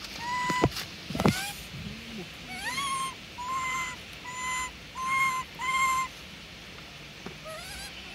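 A monkey giving a string of about six short, clear, level-pitched calls, with two sharp rising squeals in the first second and a half; the calling stops about six seconds in.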